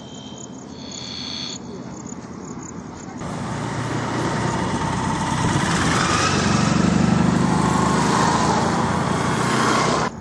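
Motor vehicles, a motorcycle and a van, passing close by: engine and tyre noise that builds from about three seconds in, is loudest near the end, and cuts off abruptly.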